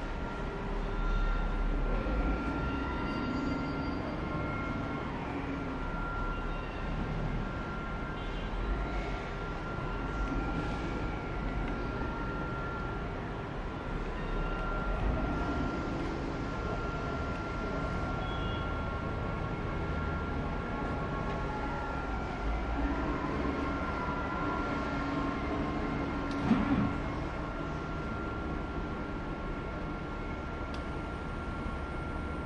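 Steady mechanical background noise of a factory floor: a low rumble and hiss with one constant high-pitched whine, faint rising and falling tones, and a single short knock near the end.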